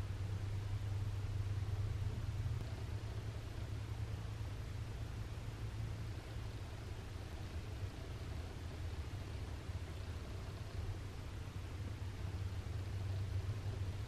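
Quiet background room tone: a steady low hum with faint hiss and no distinct sounds.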